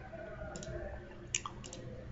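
A few short computer mouse clicks over a low hiss, the sharpest a little past the middle.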